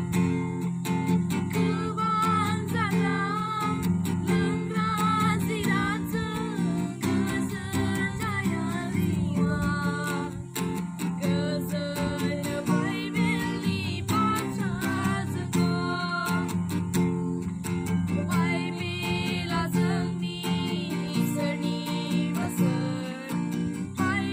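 A young boy singing a song while strumming chords on an acoustic guitar.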